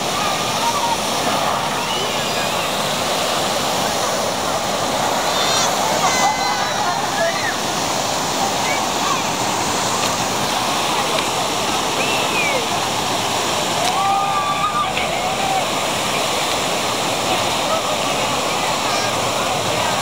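Steady rush of water cascading over a ledge into a churning channel, with voices calling out faintly now and then.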